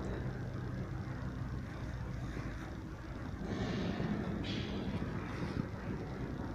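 Steady low background hum with a rushing noise, as of machinery running, and a few faint swishes and scuffs about halfway through.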